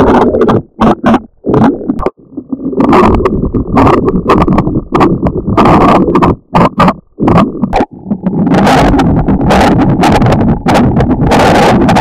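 Loud, heavily distorted electronic noise that cuts out in short gaps several times, the garbled, effects-processed soundtrack of a TV channel ident.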